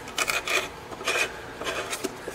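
Tapered reamer turned by hand in a violin's wooden end pin hole, scraping in several short strokes as it is pressed to one side to clean and straighten the hole.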